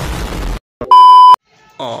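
An edited-in explosion sound effect, a deep rumbling blast, cuts off about half a second in; then a loud, steady, high censor-style bleep tone sounds for about half a second.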